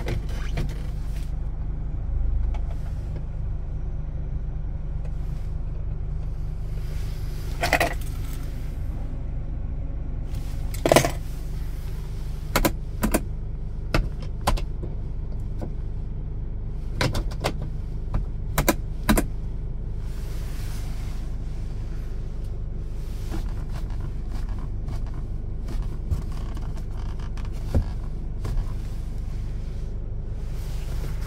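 SsangYong Korando's engine idling steadily, heard from inside the cabin. Over it come a scattering of sharp clicks, bunched in the middle, as the overhead console light switches and the sun visor are worked by hand.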